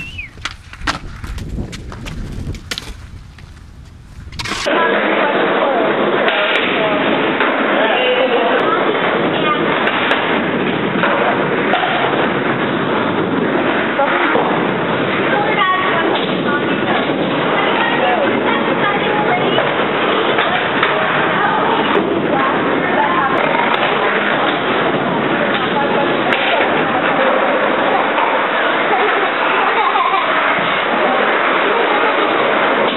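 Skateboard wheels rolling with clacks and knocks on concrete. About four and a half seconds in it cuts to a loud, steady, muffled din that mixes voices and skateboard noise, and this runs on to the end.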